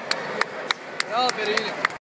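A run of sharp, evenly spaced smacks, about three a second, with a short voice call partway through.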